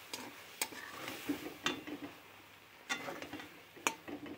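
A spatula stirring fried pointed gourd in a thick sesame paste in a pan, knocking against the pan about four times, with a faint sizzle underneath.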